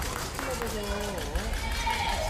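Badminton rally in a sports hall: a sharp racket hit on the shuttlecock near the start, then a voice calling out in the middle, over the hall's background murmur.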